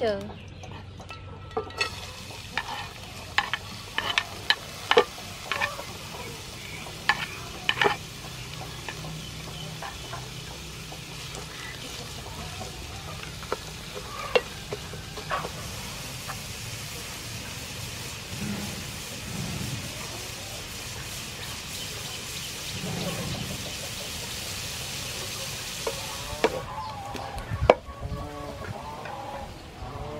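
Shredded ginger sizzling as it fries in hot oil in a wide frying pan, with a run of sharp taps and clicks in the first several seconds as it goes in. The sizzle is strongest in the middle stretch, cuts off near the end, and a few knocks of a spatula in the pan follow.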